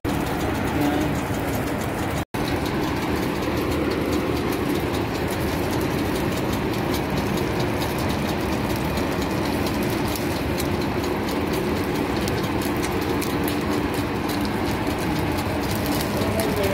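Bacon slices and burger buns sizzling on a flat-top griddle: a steady crackling hiss with a low hum underneath. A brief gap about two seconds in.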